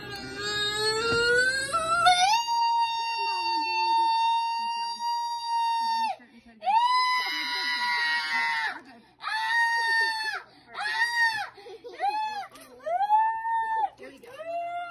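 A woman in labour screaming through the final pushes of a water birth. Her cry rises in pitch, is held long and high for several seconds, then breaks into a string of five shorter screams.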